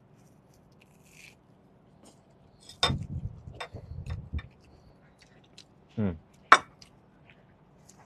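Close-miked chewing of a bite of Detroit-style pizza. It is nearly quiet at first, then wet mouth clicks and chewing come from about three seconds in. A short hummed "mm" and one sharp lip smack follow.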